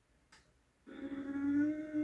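Kawasaki ZX-6R 636 inline-four engine pulling hard under acceleration, a steady high engine note that rises slowly in pitch, coming in about a second in. It is heard from onboard footage played back through a TV's speakers.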